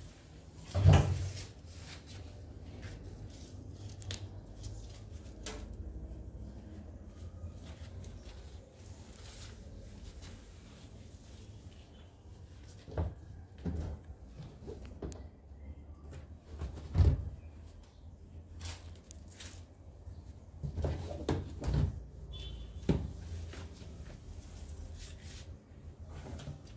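Scattered knocks and bumps from mopping with a string mop on a tiled floor, at irregular intervals. The loudest comes about a second in and another about two-thirds of the way through.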